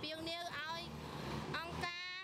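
A person speaking, with a motor vehicle's engine humming low underneath and showing through in a short pause about a second in.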